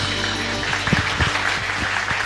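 Audience applause with scattered claps at the close of a song, a low held note still sounding underneath.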